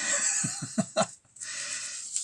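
A man's brief, breathy chuckle over a faint rustling hiss, with a sharp click about a second in.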